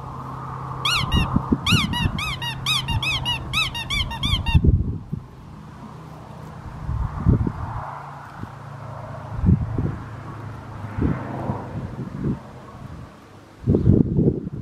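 A quick run of high squeaks, about three a second, that stops abruptly about four and a half seconds in. After it come scattered low thumps of handling and wind on the microphone.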